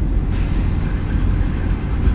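Steady low rumble of road and engine noise inside the cabin of a Chevrolet Niva driving on a wet asphalt road, with a brief hiss about half a second in.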